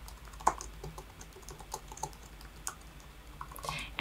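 Faint typing on a computer keyboard: irregular keystroke clicks as a short word is typed, one a little sharper about half a second in.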